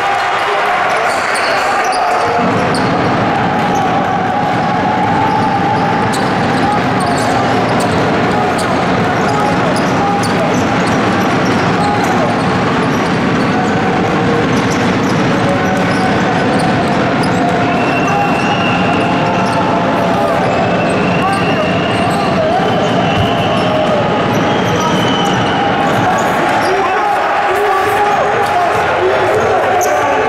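Basketball game sound in a gym: a ball dribbling on a hardwood court, under continuous indistinct voices echoing in the large hall.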